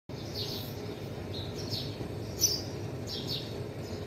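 Small birds chirping: short, high chirps repeating about once or twice a second, one of them louder than the rest about halfway through, over a low steady background hum.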